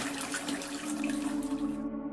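Mine water flowing and splashing over a small lip in a flooded tunnel floor, a steady rushing trickle that cuts off shortly before the end.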